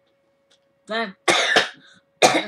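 A woman coughing: quiet at first, then a short voiced catch about a second in and a harsh cough that follows straight after.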